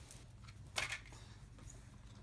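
A single short rustle of playing cards being picked up from a wooden table, about a second in, over quiet room tone.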